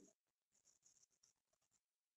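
Near silence, with faint squeaks and scratches of a marker writing a word on a whiteboard.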